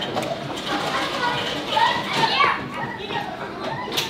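Background voices of other people talking, high-pitched like children's voices, with the loudest, higher calls a little after two seconds in.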